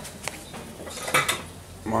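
Kitchenware being handled: a light click, then a short clatter of dishes about a second in.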